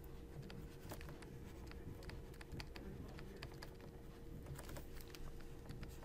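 Faint, irregular clicks and taps of a stylus on a writing tablet as handwriting is written out, over a faint steady hum.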